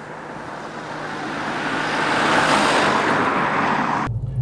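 Opel Insignia driving along the road toward the camera: tyre and engine noise growing steadily louder as it approaches, loudest over the last second and a half.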